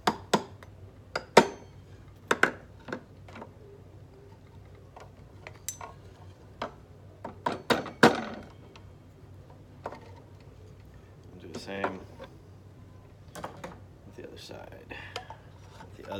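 Claw hammer tapping small nails into a wooden block, a series of sharp light taps about a second apart, more of them in the first half. The nails are pinning new rubber tubing into the wooden frame of a metallophone.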